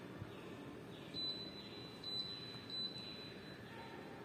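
Three short, high-pitched electronic beeps less than a second apart: an air conditioner answering a code sent from a universal AC remote during code setting.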